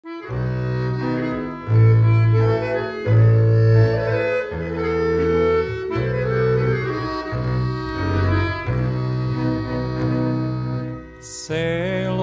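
Instrumental introduction of a 1962 Yugoslav folk song. It starts a moment in with sustained melody notes over a deep, stepping bass line. Near the end a male voice comes in singing with vibrato.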